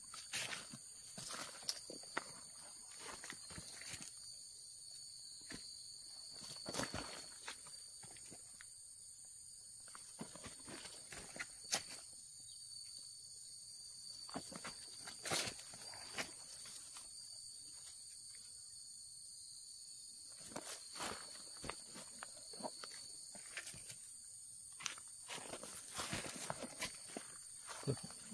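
Faint scattered rustles and soft taps as a disposable cup of powdered insecticide wrapped in onion-mesh netting is shaken over cabbage seedlings, with footsteps and rustling in dry pine-needle mulch, over a steady high-pitched background tone.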